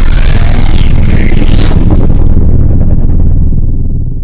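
Loud booming logo-sting sound effect: a deep rumble with whooshing sweeps early on. The hiss on top fades away over the last two seconds while the low rumble carries on.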